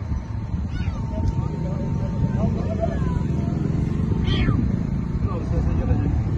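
A cat trapped in a car's engine compartment meowing a few times, with short rising calls, the clearest about a second in and again near four and a half seconds.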